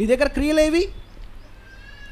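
A man's voice preaching through a microphone: one short, drawn-out phrase that rises in pitch, then a pause of about a second.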